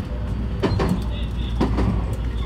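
223 series electric train running on the line, with a steady low hum and the clicks of wheels crossing rail joints, in pairs about once a second.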